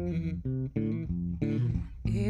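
Electric bass guitar played alone: a short run of about five separate plucked notes with brief gaps between them.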